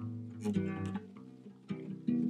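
Acoustic guitar strummed: a chord struck about half a second in rings out and fades, with a light stroke near the end.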